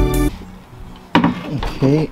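Piano background music that ends within the first half second. Then a short, sharp clatter about a second in, and a man's voice starting near the end.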